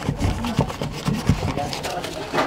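Folded paper cootie catcher being jabbed and rubbed into the corner of a wooden-panelled wall: several soft, irregular knocks and scuffs.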